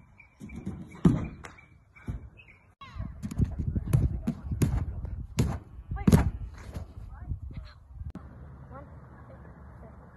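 Repeated thuds of a child landing flips on an inflatable air track mat, several in a row between about 1 and 7 seconds in, with brief voices between them.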